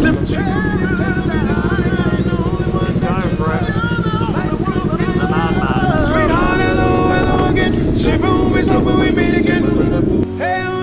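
Motorcycle engine running steadily as the bike rides along a road, heard from the rider's seat, with a song with singing laid over it.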